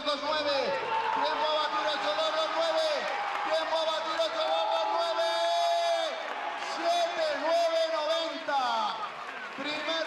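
A man's voice speaking continuously, an excited live commentary with some long drawn-out notes.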